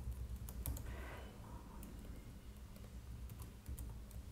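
Faint computer keyboard typing: a few scattered, unhurried keystrokes over a low steady hum.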